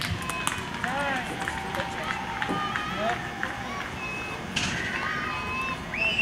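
Several people shouting and calling out, short raised calls that rise and fall in pitch, with scattered clicks.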